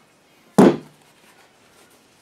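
A man says one short word, loud and abrupt at its start, about half a second in; otherwise quiet room tone.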